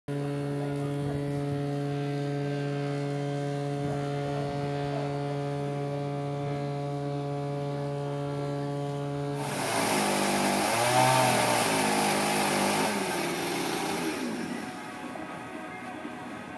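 A steady, unchanging hum with many overtones. About nine seconds in, a power tool starts cutting wood: a hissing cut, with the motor's pitch rising and falling, dying away near the end.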